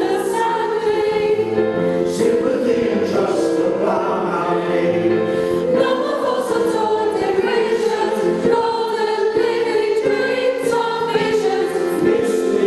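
A choir singing, with women's voices to the fore, in one continuous passage at a steady level.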